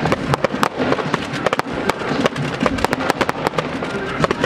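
Aerial fireworks firing in rapid succession: many sharp bangs and pops, several a second, with music playing underneath.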